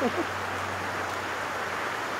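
Steady rush of a fast-flowing river, a constant even wash of water noise, with the tail of a man's voice in the first moment.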